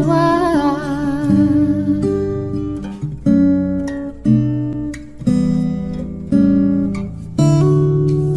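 Acoustic guitar cover of a love song. A held sung note with vibrato dies away about a second in, and the guitar plays on alone, striking a new chord roughly once a second, each ringing and fading.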